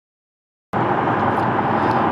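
Total silence, then, about two-thirds of a second in, the steady road and engine noise of a car being driven, heard from inside the cabin.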